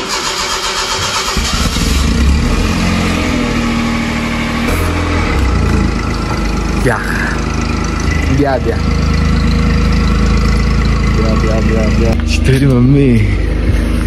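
Toyota Vitz hatchback engine running steadily at idle, a loud, even low hum. Voices are heard over it near the end.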